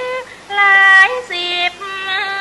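A woman singing a Thai classical vocal line solo, holding long notes that step up and down in pitch, with a short break just after the start before the next phrase.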